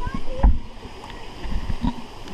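Pool water splashing and sloshing right at the camera, with dull low thumps about halfway through and again near the end.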